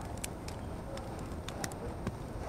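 Supermarket background noise: a steady low hum with scattered light clicks and clatter, and faint brief tones in the background.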